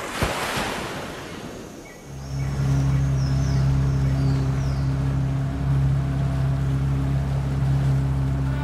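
Sea surf washing in as one swell over the first two seconds, with a sharp click near its start. From about two seconds in, a steady low drone of sustained tones takes over.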